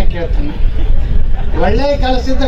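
A man's speech amplified through a public-address microphone, a short fragment, a pause of about a second, then speech again near the end, over a steady low rumble.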